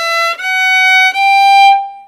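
Solo violin, bowed, playing a slow rising passage of three notes climbing step by step, the last held and then dying away near the end. The passage includes a shift of hand position from the second finger to the first.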